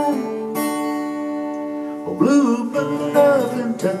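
Acoustic guitar strummed, a chord ringing on for about two seconds, then a man's singing voice comes back in over the guitar for the next line of a country/bluegrass song.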